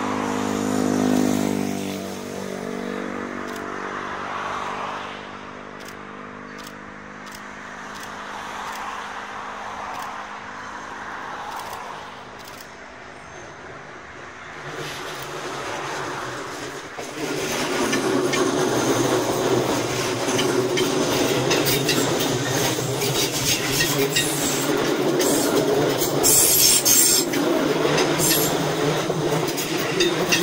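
A Tobu 6050-series electric train running toward the listener on the Tobu Nikko Line. A pitched tone is loudest in the first few seconds and then fades. From about halfway the train's running noise grows much louder as it nears, and it passes close by with wheels clattering on the rails near the end.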